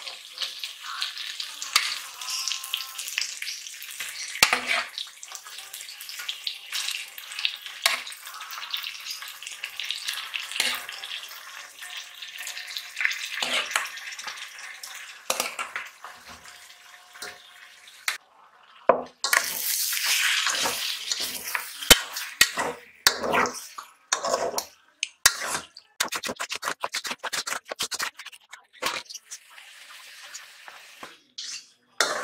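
Raw chicken pieces sizzling in hot oil and masala in a metal pot as they are stirred, a spoon scraping and knocking against the pot's sides. The sizzle swells loudest for a few seconds past the middle, followed by a run of quick knocks as the stirring goes on.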